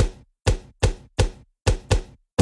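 Beatboxed percussive clicks into a close microphone, sharp and evenly spaced at about three a second, each dying away quickly.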